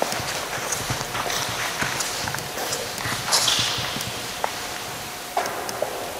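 Footsteps clicking irregularly on a hard stone floor, echoing in a large stone hall, with a brief hiss about three seconds in.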